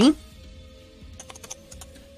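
Computer keyboard typing: a short, quick run of keystrokes about a second in, just after the tail of a spoken word.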